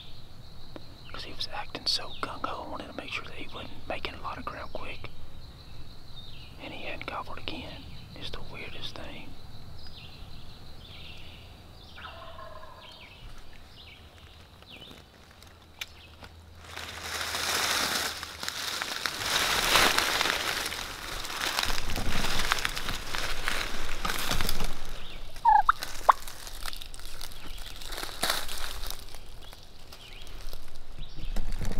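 Wild turkey gobbler gobbling several times, with a quieter spell after. From a little past halfway, a long stretch of loud rustling and crunching takes over, with one short falling call in it.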